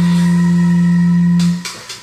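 Electric bass playing along to a power metal backing track: a long held note and chord that die away about a second and a half in, leaving a brief dip before the next chord.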